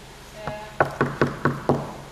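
Knuckles knocking on a fiberglass-clad column: about five quick knocks in under a second, starting near the middle. The knocks give the column away as a fiberglass shell rather than solid stone.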